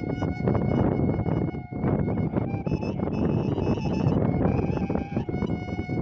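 Shepherd's kaval, a long wooden end-blown flute, playing a folk melody: long held notes, a higher run of notes in the middle, then back to the lower held note near the end, all over a loud steady rushing hiss.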